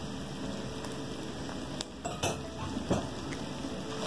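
Minced-beef filling sizzling softly in a nonstick frying pan as a spatula stirs it, with a few light knocks and scrapes of utensil on the pan between about two and three seconds in.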